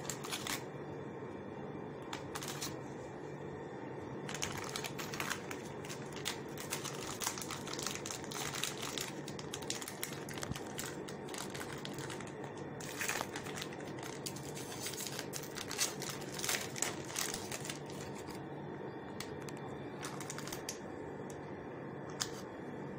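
Irregular clicks and crinkles of close handling, busiest through the middle and sparse near the start and end, over a steady low hum.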